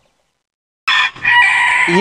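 A rooster crowing: after a near-second of dead silence, one loud held crow of about a second.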